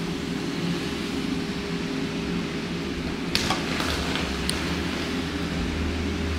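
Steady low hum of indoor background noise, with a brief faint sound a little over three seconds in.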